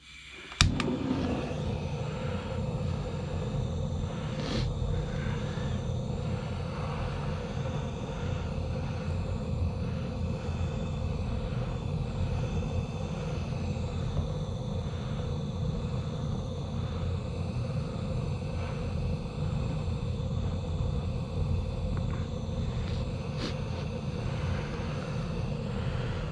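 Handheld butane blowtorch relit with a sharp click about half a second in, then a steady hiss of its gas flame firing into a small stove's firebox of wood chips.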